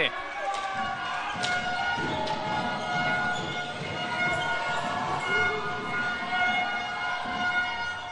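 Sports-hall sound of an indoor hockey game: distant voices of players and spectators with a few sharp clicks of sticks on the ball, over a steady background tone.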